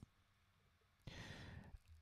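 Near silence, then a faint breath drawn by a man, lasting under a second, about a second in.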